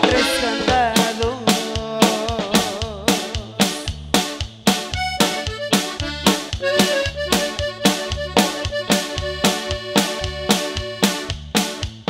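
Norteño band playing an instrumental passage: accordion carries the melody over a steady beat of about two strokes a second.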